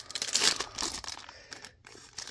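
A trading card pack's wrapper being torn open by hand, with a crinkling rip that is loudest in the first second and then dies down.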